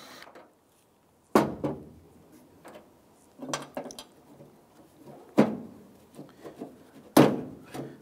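Four sharp knocks and clunks, about two seconds apart, each fading quickly, with faint clatter between, as the loosened tailgate handle and its hardware are knocked about inside a pickup's hollow tailgate.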